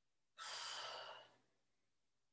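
One breathy exhale, about a second long, from a woman working through a lunge.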